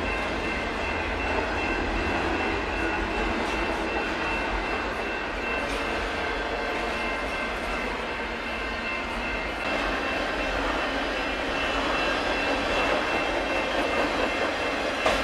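Union Pacific double-stack container train's cars rolling past at a steady pace: a continuous rumble and rattle of wheels and loaded stack cars on the rails, with a faint steady high ringing tone over it.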